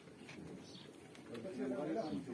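Pigeons cooing: a low, wavering call that grows louder near the end.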